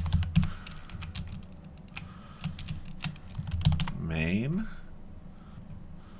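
Typing on a computer keyboard: quick, irregular key clicks in short runs.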